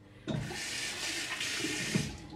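Water running from a bathroom sink tap, turned on suddenly about a third of a second in and then running steadily.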